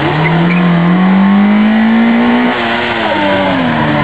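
Small hatchback rally car's engine pulling hard towards the listener, its pitch climbing steadily, then falling away about two and a half seconds in as the car slows for a corner.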